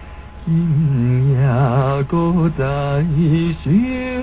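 A man singing a slow Taiwanese-style ballad with deep, wide vibrato on long held notes. He takes a brief breath at the start, then sings phrases that step between pitches, with short breaks about two seconds in and near the end.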